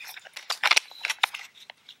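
Plastic battery cover on the back of a CanaKit handheld wireless mini keyboard being worked over the battery compartment: a quick run of sharp plastic clicks and scrapes, thickest in the first second, with a few more later.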